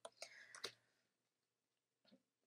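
A few faint clicks from tarot cards being handled and laid down on a cloth mat, all within the first second.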